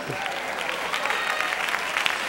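Congregation applauding, a steady clapping of many hands with no words.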